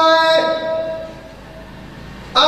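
A man's amplified voice holding a long sung note in a majlis recitation. The note dips in pitch and fades out about half a second in, and a quiet pause follows.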